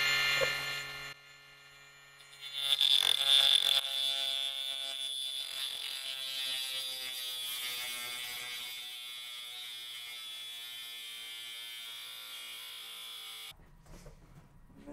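Ridgid 18V subcompact brushless 3-inch multi-material saw cutting metal with a high motor whine. It stops about a second in and starts again a second and a half later, loudest as it restarts, then sags slowly in pitch and loudness as it cuts, and cuts off sharply near the end.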